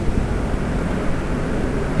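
Steady background noise: an even hiss with a low rumble beneath it, with no speech.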